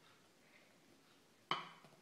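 Quiet, then a single sharp knock about one and a half seconds in: a plastic rolling pin set down on a granite countertop to start rolling out a ball of fondant.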